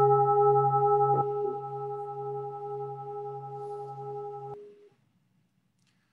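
A meditation bell ringing on after a strike, with several steady overtones. Its lowest tone drops out about a second in and the rest stops about four and a half seconds in. It marks the close of a one-minute silent meditation.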